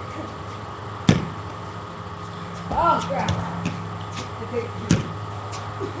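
A small ball, used for backyard one-on-one basketball, striking hard surfaces: two sharp knocks about four seconds apart, about a second in and near the end.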